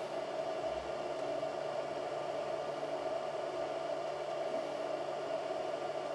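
Qidi X-one2 3D printer running during a print: a steady fan whir with a faint hum of motor tones underneath.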